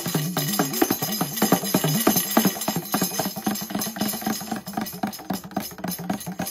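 Ocean drum (a rawhide frame drum with loose beads inside) tilted back and forth, the beads rolling and rattling across the head in a rapid, dense clatter. A low tone steps up and down underneath.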